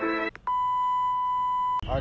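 String background music stops, then a single steady electronic beep holds for a little over a second and cuts off sharply. A voice starts just after it.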